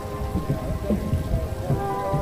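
Water from a tiered fountain splashing steadily into its basin, a continuous rain-like patter, with faint music underneath.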